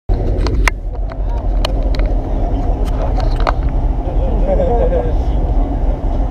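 Voices talking over a steady low rumble, with several sharp clicks in the first few seconds.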